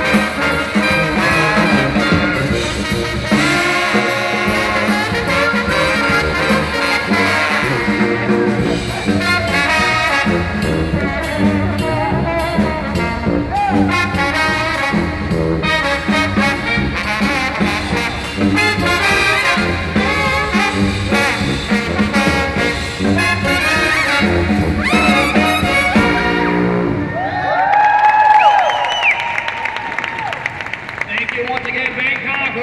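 A live brass band of trombones, sousaphone, trumpet, saxophones and drum kit playing a jazzy tune, which closes near the end on a long held note that bends up and down.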